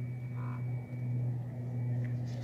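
A steady low hum, dipping briefly about a second in.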